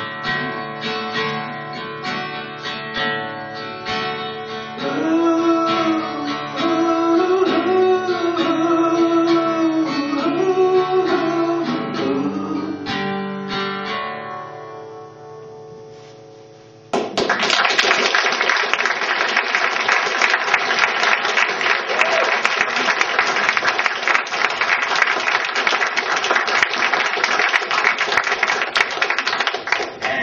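Acoustic guitar strummed under a sung melody, ending on a final chord that rings out and fades. About halfway through, audience applause breaks out suddenly and carries on steadily.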